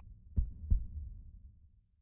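Heartbeat sound effect: a single lub-dub, two low thumps close together about half a second in, over a low hum that fades away.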